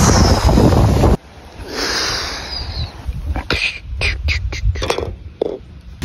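Wind buffeting the microphone, cutting off suddenly about a second in, followed by a run of short knocks and clicks.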